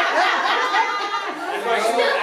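Several people talking over one another: the chatter of a small group in a room.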